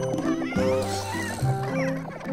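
Cartoon background music, a melody of short held notes, with high, wavering cartoon-creature vocal sounds over it about a second in and again near the end.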